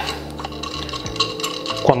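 Metal thumbscrews being turned by hand into the threaded holes of a QHYCFW3 filter wheel's metal housing: light metallic rubbing and small clicks.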